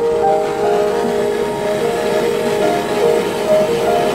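Handheld gas torch flame hissing steadily as it sears bonito nigiri, heard under background music with soft piano-like notes.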